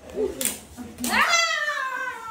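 A short sharp click, then a high-pitched call that rises quickly and falls away in one long glide of about a second and a half.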